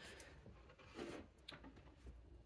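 Near silence: room tone, with a faint, brief rub about a second in and a light tick shortly after.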